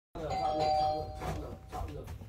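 Doorbell chime ringing with two steady tones held for about a second, then a short repeat of the chime near the end.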